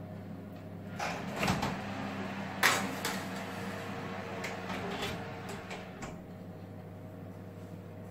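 A Hotpoint built-in oven door being pulled open, a metal baking tray slid onto the wire oven rack with a run of clunks and scrapes, the loudest about two and a half seconds in, and the door shut again. A steady low hum runs underneath.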